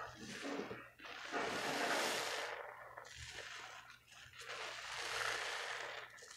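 A soap-soaked sponge squeezed by gloved hands in a basin of thick foamy soap water: wet squelching of foam and suds in repeated long swells, loudest about two seconds in.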